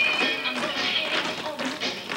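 Dance music playing, with the clicks of tap shoes striking the stage throughout.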